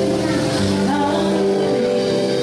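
Live band playing through amplifiers: held chords and bass notes that change in steps.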